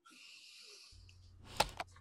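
A breathy, wheezy hiss for about a second, then a low steady hum comes in, with two sharp clicks near the end.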